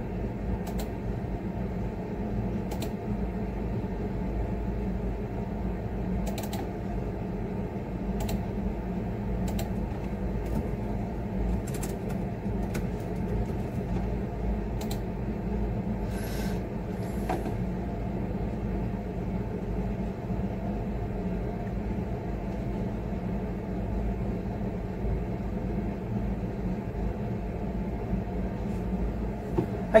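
Steady mechanical hum of a running room appliance, with scattered keyboard and mouse clicks every second or two as someone works at a computer.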